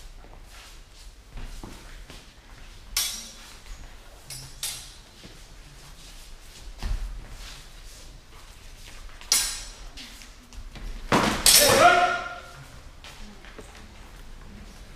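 Steel training swords clashing, with sharp ringing strikes about three and four and a half seconds in and again near nine and a half, echoing in a large hall. About eleven seconds in comes the loudest moment: a strike and a loud, drawn-out shout.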